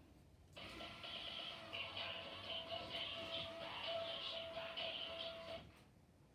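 Gemmy dancing skeleton-in-cage Halloween prop playing a short snippet of its song in demo mode. It starts about half a second in and stops just before the end, and sounds thin, with little bass.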